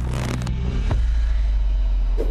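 Trailer sound design: a deep, steady low rumble, with a short noisy whoosh at the start and a single sharp hit about a second in.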